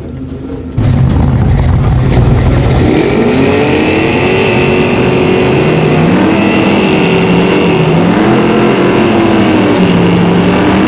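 Drag-car V8 engines revving hard on the start line, the pitch climbing and falling again and again. The loud engine sound comes in abruptly about a second in, and near the end the Chevy Nova goes into its burnout with its rear tyres spinning.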